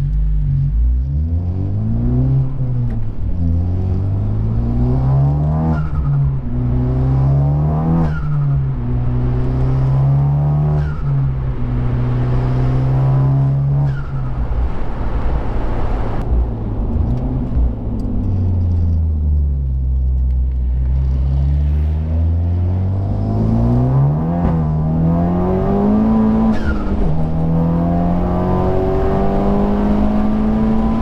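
Honda Civic Type-R FK8's turbocharged 2.0-litre four-cylinder, heard from inside the cabin, accelerating hard through the gears of its six-speed manual. The engine note climbs and drops back at each upshift, about five times in the first fifteen seconds. It then eases off in a long, slow fall in pitch and pulls up through two more gears near the end.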